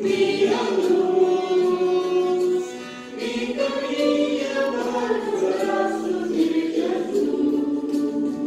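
Choir singing a devotional hymn in long held notes, with a short pause between phrases about three seconds in.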